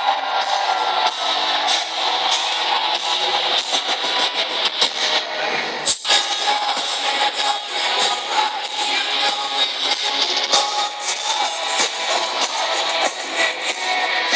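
Live heavy-metal band playing loud, with distorted electric guitars and drums, heard through a phone microphone in the crowd so it sounds thin with little bass. A sharp crackle cuts through about six seconds in.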